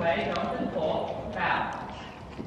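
A horse standing close to the microphone, with a short breathy rush about one and a half seconds in, after a woman's voice trails off at the start.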